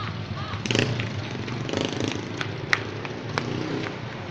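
Small-town street traffic: motorcycle and tricycle engines running, with brief snatches of people's voices and a few sharp clicks.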